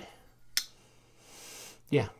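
A single sharp click about half a second in, as the blade of the Kansept Hellx titanium frame-lock flipper knife is closed into the handle. It is followed by a faint, soft hiss.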